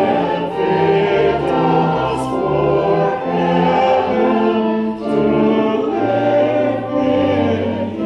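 Mixed church choir of men and women singing together, holding long notes.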